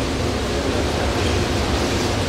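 Steady low mechanical hum with an even rushing noise over it, unchanging throughout.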